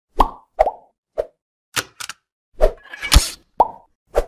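Logo-intro sound effects: a quick string of short pops, roughly one every half second, with a hissing swell that builds into a sharp hit just past three seconds.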